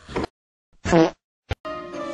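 Chopped cartoon soundtrack: a brief cut-off snatch of sound, a moment of dead silence, then one loud pitched blurt with a bending pitch, used as a comic sound effect. A click follows, and steady background music cuts back in.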